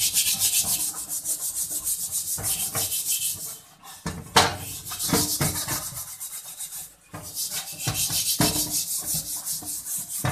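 Steel wool scrubbing blackened, burnt-on residue off the underside of a wok in fast back-and-forth strokes, about five a second. The scrubbing breaks off briefly about four seconds in, when one sharp knock is heard, and dips again near seven seconds.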